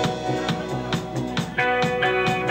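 Indie rock band playing live: electric guitar over a drum kit in an instrumental passage, with regular drum hits. The playing gets louder about one and a half seconds in.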